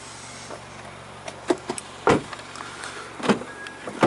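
Handling knocks and taps from a handheld camera being moved, three sharper ones with the loudest about two seconds in, over a steady low hum.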